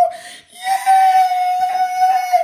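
A man's high falsetto wail, held on one steady pitch. It breaks off briefly at the start and is held again from about half a second in, with the pitch of an excited, overjoyed outcry.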